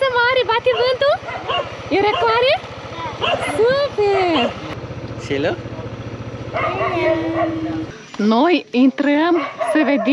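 Small motor-scooter engine idling with a rapid, even low pulse, under high-pitched voices and laughter; the engine sound cuts off abruptly about eight seconds in.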